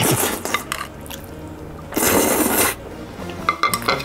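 A person slurping a mouthful of ramen noodles in two loud bursts, one at the start and one about two seconds in, with a few light clicks of chopsticks against a dish near the end.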